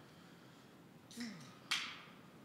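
A brief sound falling in pitch about a second in, followed shortly by a single sharp click, the loudest sound.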